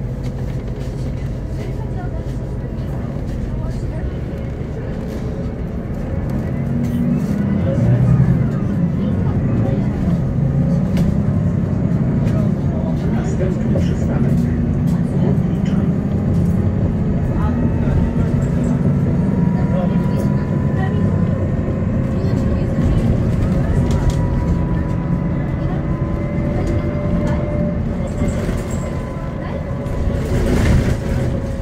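Inside a Solaris Urbino 12 III city bus under way: the DAF PR183 diesel engine and ZF 6HP-504 six-speed automatic gearbox running. The engine drone grows louder about six seconds in as the bus pulls harder, and over the second half a thin whine rises slowly in pitch with road speed.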